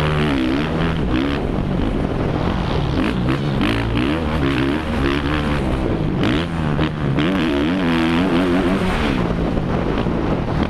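Onboard sound of a four-stroke 450 motocross bike racing on a dirt track. The engine revs rise and fall over and over with throttle and gear changes. Short knocks from the bumpy track come through the engine note.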